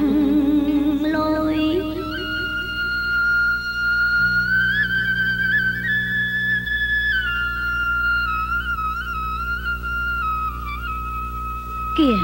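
Bamboo flute (sáo) playing a slow, melancholy melody of long held notes with wavering trills and small bends, over a low steady background.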